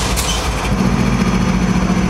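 Diesel engine of a GE ES44C4 locomotive running as the unit rolls past, a steady low drone that swells strongly about two-thirds of a second in. A brief hiss comes just after the start.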